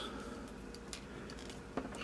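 Faint clicks and light handling noise of small plastic action-figure parts being pulled off and turned in the fingers.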